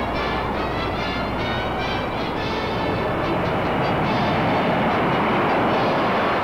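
Jet bomber engines at takeoff thrust: a loud, steady rushing roar that swells toward the end. The orchestral music track fades out under it early on.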